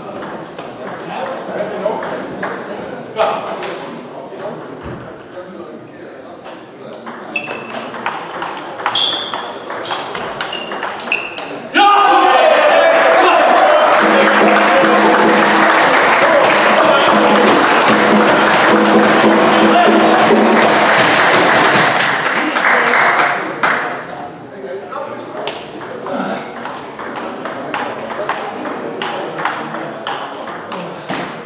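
Table-tennis ball clicking off bats and table in rallies, a quick series of sharp ticks. About twelve seconds in a loud, sustained din starts abruptly, lasts about ten seconds and fades out, after which the ball clicks resume.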